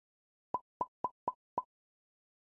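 Five short pop sound effects in quick succession, about a quarter of a second apart, starting about half a second in: animation pops, one for each icon appearing on screen.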